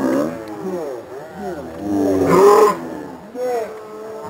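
Men's voices shouting and calling out across an outdoor football pitch, overlapping, with the loudest shout just over two seconds in.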